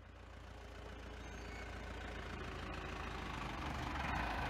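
Truck engine sound effect, a low running rumble that fades in and grows steadily louder.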